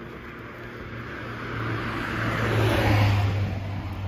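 A road vehicle passing close by in the street: its engine hum and tyre noise build up, are loudest about three seconds in, then fade as it moves away.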